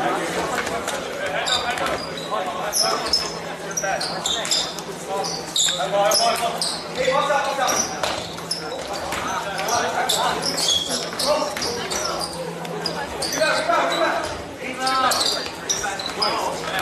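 Live basketball play on a hardwood gym floor: the ball bouncing on the floor, short high sneaker squeaks, and players and onlookers calling out at intervals.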